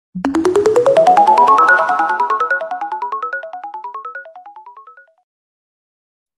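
A short electronic intro jingle: a fast run of bright, chime-like notes, about eight a second, climbing in pitch and fading out after about five seconds.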